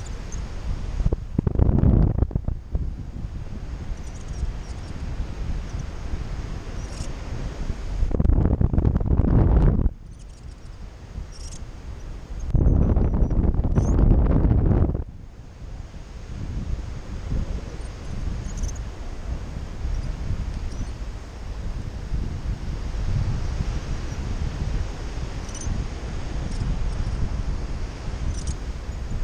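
Wind rushing over the microphone of a paraglider's action camera in flight, a steady low rumble broken by three louder gusts of buffeting: about two seconds in, around eight to ten seconds, and around thirteen to fifteen seconds.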